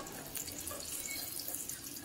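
Mustard oil sizzling faintly and steadily in a small saucepan as crushed bori (sun-dried lentil dumplings) and nigella seeds fry.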